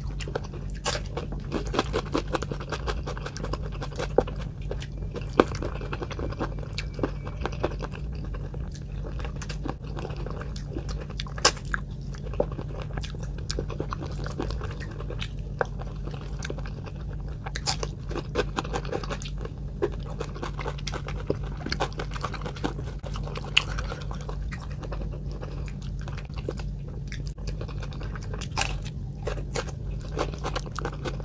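Close-miked mouth sounds of a person eating chicken feet curry with rice: wet chewing and biting with many small sharp clicks and crunches, over a steady low hum.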